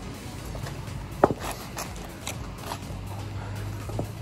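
Footsteps and scuffing on pavement, with one sharp knock about a second in. A low steady hum comes in near the end.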